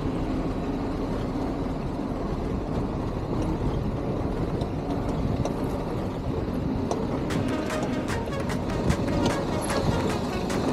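Four-cylinder engine of a WWII-era jeep running steadily as the jeep crawls down a rough dirt trail, with a run of sharp ticks and rattles in the last few seconds.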